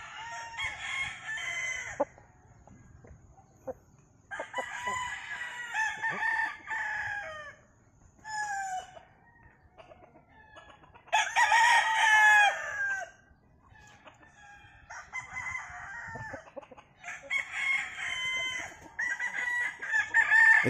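Several gamefowl roosters crowing one after another, a new crow every two to three seconds. The loudest crow comes about eleven seconds in.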